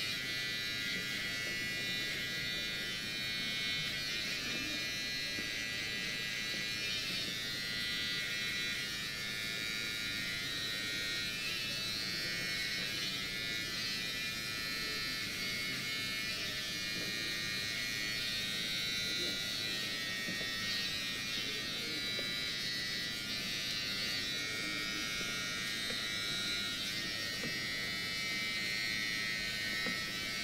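A steady electric buzz, like a small motor, runs unchanged throughout.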